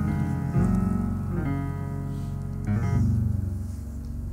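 Slow background keyboard music: sustained piano-like chords over a held bass, changing chord about every second.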